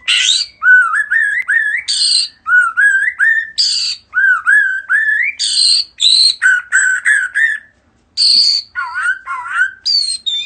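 White-rumped shama singing a rapid, varied song: short rising whistled notes strung together with harsh raspy calls, with one brief break near the end.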